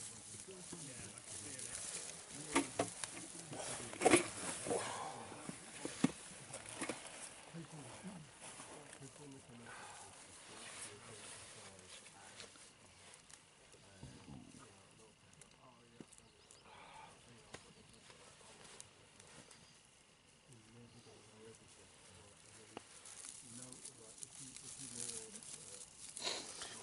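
A bundle of dry grass rustling and crackling as hands twist and press it into a tinder nest. Several sharp crackles come in the first six seconds, then quieter rustling.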